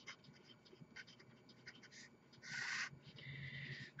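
Marker pen writing on paper: faint small taps of letters being formed, then two longer strokes in the second half, the first the louder, as the heading is finished and underlined.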